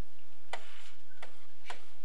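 Three sharp taps of a stylus pen on a tablet screen as numbers are written and circled, over a faint steady electrical hum.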